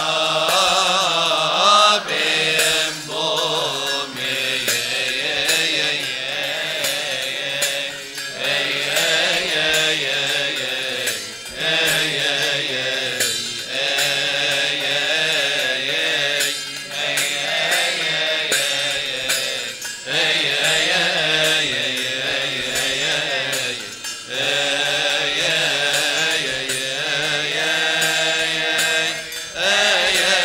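Coptic church choir chanting a slow, melismatic hymn in unison in Coptic, the melody winding up and down on long held syllables and breaking off briefly for breath every few seconds.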